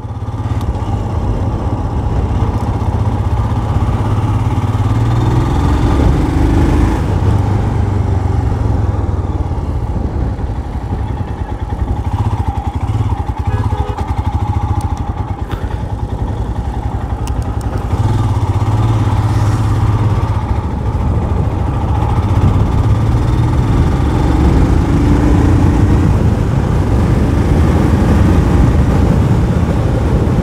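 Royal Enfield Scram 411's single-cylinder engine running steadily under way, heard from the saddle. It is quieter for a few seconds about halfway through, then picks up again.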